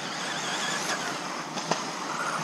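Radio-controlled 4WD buggies racing on a dirt track: a high, wavering motor and drivetrain whine over a steady rush of tyre and track noise, with two sharp clacks about one and nearly two seconds in.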